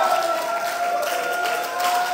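Congregation clapping and cheering, with a steady held note sounding over the applause.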